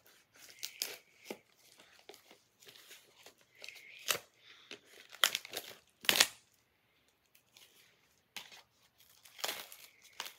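Plastic shrink-wrap being torn and peeled off a Blu-ray SteelBook case: irregular crinkling and tearing, with sharp rips about four, five and six seconds in, a short lull, then another rip near the end.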